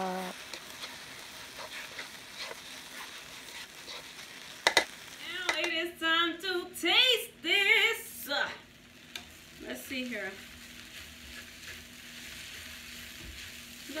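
Quinoa and vegetable stir fry sizzling in an oiled skillet as it is stirred, a steady frying hiss. A single sharp clack about a third of the way through.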